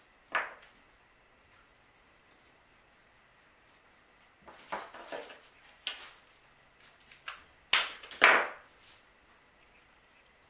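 Dried allium stems and grapevine twigs handled and pushed into floral foam: a few sharp dry clicks and short scratchy rustles, in two clusters, the loudest late on.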